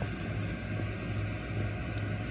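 Steady low hum with an even background noise, no distinct events.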